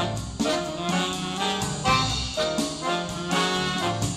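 Live tango-jazz ensemble playing, with trumpet and saxophone carrying the melody together over piano, double bass and drum kit.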